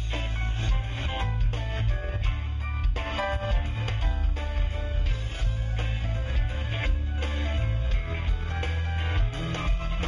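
Live band playing: electric guitar over a heavy bass line and drums.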